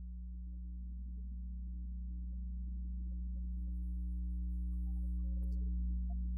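Electronic tanpura drone: a steady low hum that holds the pitch for the singers and grows slowly louder, with a few faint short notes above it.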